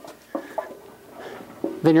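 Low room sound with a few faint, short knocks and rustles from a lifter getting out from under a barbell that rests on a power rack's steel safety bars. A man starts speaking near the end.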